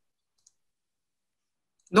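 Near silence, the gated dead air of a video call, broken by one faint click about half a second in; speech starts again right at the end.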